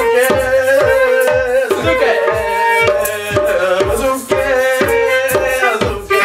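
Hand drumming on a djembe in a jam, with a steady beat of low drum hits about three times a second and a melodic line over it.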